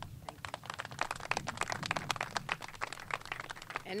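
Applause from a small group outdoors, individual hand claps heard distinctly rather than merged into a roar.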